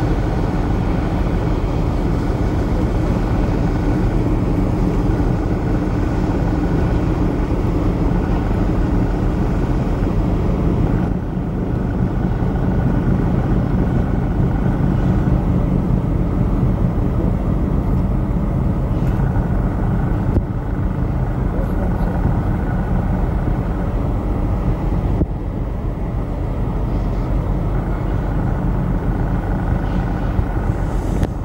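A steady low engine rumble, with indistinct voices over it.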